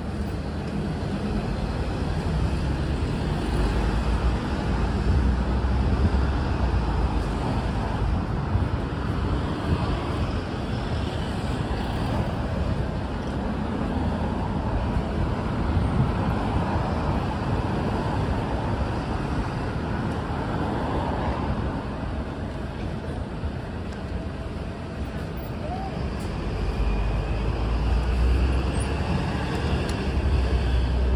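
Busy city road traffic: cars, buses and trucks passing close by in a steady wash of noise, with heavier deep rumbles from passing vehicles near the start and again near the end.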